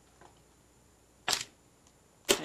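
Near silence of a remote-hearing audio feed, broken once about a second and a half in by a single short, sharp click.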